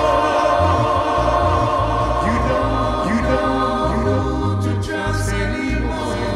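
Reggae track playing: a heavy bass line stepping between notes under sung vocal harmonies.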